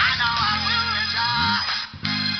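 Electric bass played along with a recorded song, holding low notes under the melody, with a slide up in pitch about one and a half seconds in and a brief gap just before the end.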